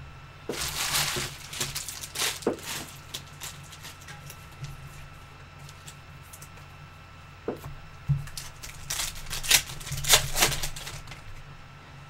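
A trading-card pack wrapper being torn open and the cards handled: short bursts of crinkling and rustling, busiest from about eight to eleven seconds in.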